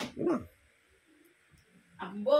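A dog's short yelp with a falling pitch in the first half-second, just after a sharp click.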